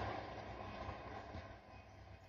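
Faint steady background noise, a low hum with some hiss, fading away to near silence near the end.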